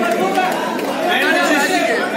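Several voices talking over each other: audience chatter.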